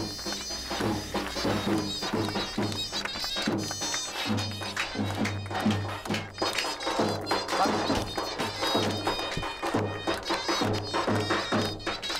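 Davul and zurna playing a lively Turkish folk tune: the shrill, reedy zurna carries the melody over the steady beat of the big davul drum, with hands clapping along.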